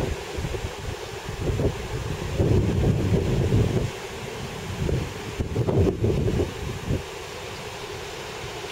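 Wind buffeting the camera microphone in irregular gusts over a steady hiss of surf breaking on a sandy beach. The gusts die down about seven seconds in, leaving the surf.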